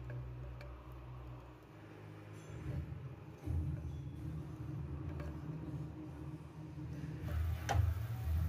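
Wooden spatula stirring and mashing cooked toor dal in an aluminium pressure cooker pot, with a few faint taps of the spatula against the pot over a low rumble.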